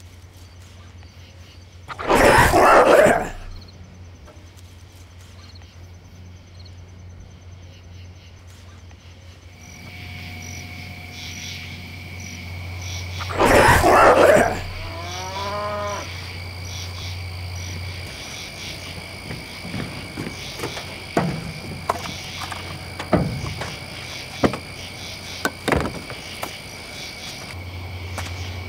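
Sound-designed night-forest soundtrack: steady high chirring of night insects over a low drone, broken by two loud rushing swells, one a couple of seconds in and one about halfway through. In the second half come a few sharp snaps.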